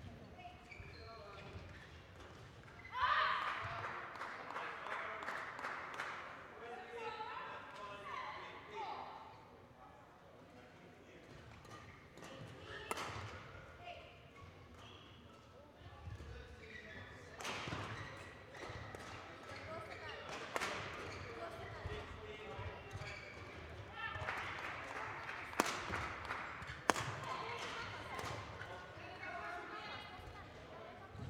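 Indistinct voices echoing in a large sports hall, with scattered sharp knocks of badminton rackets striking shuttlecocks; two louder knocks near the end.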